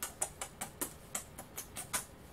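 A man quickly kissing each of his fingers in turn: about ten short lip-smack kisses in a fast, even run, roughly five a second.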